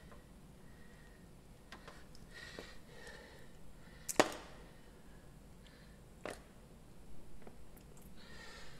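A bearing grease packer being handled: a few light clicks and knocks, with one sharp click about four seconds in as the top piece is lifted off the freshly packed wheel bearing.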